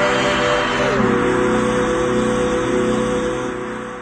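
Closing music of a radio station ident jingle: a held chord that moves to a new chord about a second in, then fades out near the end.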